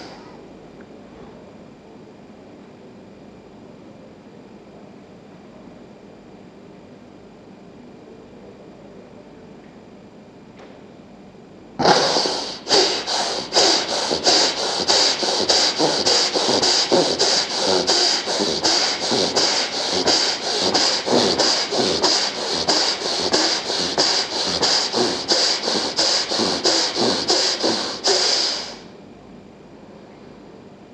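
A person doing rapid, forceful pranayama breathing, a fast bellows-like rhythm of hissing breaths at about three a second. It starts abruptly about twelve seconds in after quiet room tone and stops shortly before the end.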